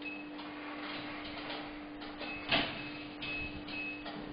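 Short high electronic beeps from surgical equipment, one near the start and several more in the second half, over a steady low hum. A sharp clatter about two and a half seconds in is the loudest sound.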